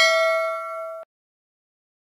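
Notification-bell sound effect: a single struck ding ringing out and fading, cut off abruptly about a second in.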